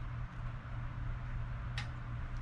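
Quiet, steady low background hum, with one faint, short scrape near the end: a coin scratching the latex off a scratch-off lottery ticket.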